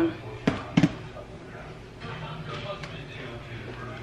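Two sharp knocks close together about half a second in, then faint, indistinct voices in the background over a steady low hum.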